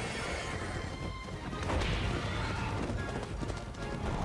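Animated-episode soundtrack: music with heavy stomping footstep effects.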